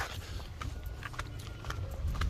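Footsteps on a dirt path, a soft step about every half second, over a low steady rumble.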